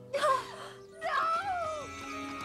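A woman's voice gives a sharp startled gasp, then about a second in a long wavering cry that falls away, over background music.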